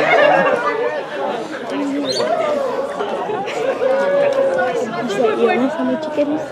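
Sideline chatter: several people's voices talking over one another at once, none standing out clearly.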